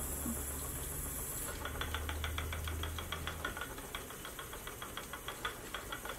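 Kromski Fantasia wooden spinning wheel turning under the treadle while plying, with a fast, even clicking of about six to seven a second that starts about a second and a half in. A low hum sits under the first few seconds.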